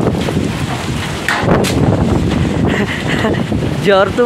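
Storm wind buffeting the phone's microphone: a heavy, steady rushing noise, strongest in the low range.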